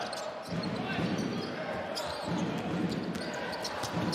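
Basketball game in an indoor arena: steady crowd noise, with the ball bouncing on the hardwood court in short sharp knocks throughout.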